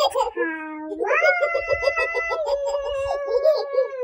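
A high-pitched voice holding long, wavering notes: a slide down at the start, then a rise about a second in to a note held for more than a second.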